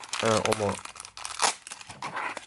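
Crinkling of foil and plastic packaging bags being handled and pulled from a cardboard box, with a short loud burst of rustling about one and a half seconds in.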